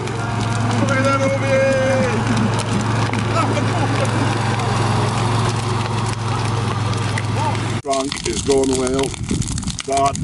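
Ride-on lawn mower engine running with a steady low drone, which stops suddenly near the end.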